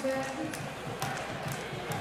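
Ice hockey arena background of crowd and music, with a held musical note dying away in the first half-second. A few faint clicks of sticks and puck on the ice follow.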